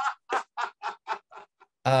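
A man's hearty laughter: a run of about seven short breathy 'ha' pulses, roughly four a second, fading away.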